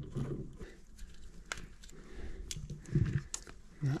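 Scattered sharp clicks and small scrapes of a plastic wire nut being twisted onto stiff copper wire ends. The wire nut is not catching and tightening properly.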